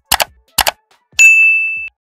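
Two quick double mouse-click sound effects, then one bright notification-bell ding, the loudest sound, which rings for under a second and fades away.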